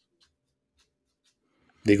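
Near silence, with a few very faint ticks, then a man starts speaking near the end.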